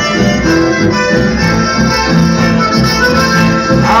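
Live band music led by a button accordion, playing held chords and melody over a pulsing low accompaniment in an instrumental passage without singing.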